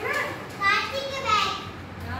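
Young children's voices speaking in a classroom, with two louder calls about two-thirds of a second and a second and a half in.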